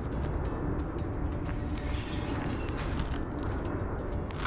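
Footsteps crunching on a gravel path, short crisp crunches every half second or so, over a steady low rumble of city traffic.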